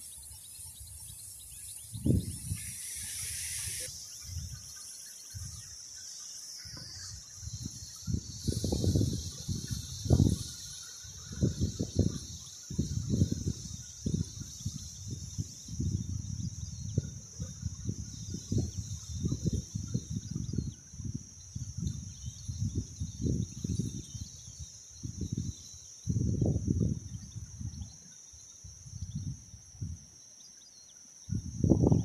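A steady, high-pitched insect trill that settles in a few seconds in and carries on, over irregular low rumbling bursts on the microphone.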